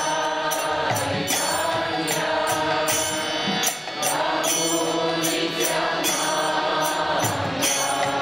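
Kirtan: a man leads a devotional mantra chant into a microphone, with other voices joining. Small hand cymbals (karatalas) strike a steady, even beat throughout.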